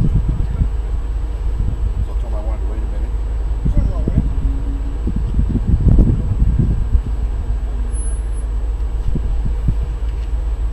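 Indistinct voices talking in short bursts over a steady low rumble, heard from inside a stationary car.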